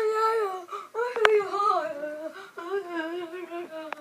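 A boy's voice making long, wavering, whiny hums in three drawn-out stretches.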